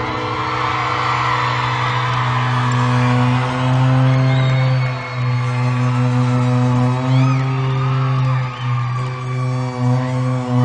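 Live band holding a sustained low chord after a final strike, while the concert audience cheers, whoops and whistles.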